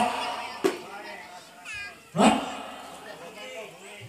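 High, meow-like cries: a short wavering cry near the middle, then a louder cry just after two seconds that starts suddenly and falls in pitch, with a single click before them.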